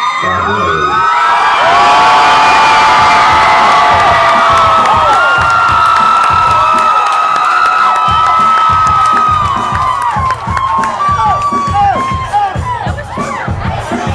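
A club crowd cheering and screaming, many voices whooping at once. In the last few seconds the cheering thins and sharp claps come through.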